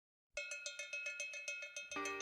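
Start of a TV show's intro theme music: after a brief silence, a fast, even run of bell-like metallic percussion strikes, about seven a second.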